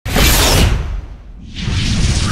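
Whoosh sound effects over a deep low rumble in an animated logo intro: one sweep through the first second, then a second one building near the end.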